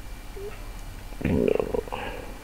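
A short wordless vocal sound from a man, like a hum or grunt, starting a little over a second in and lasting under a second.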